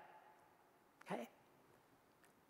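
Near silence: room tone, with one short, faint vocal sound from a man about a second in.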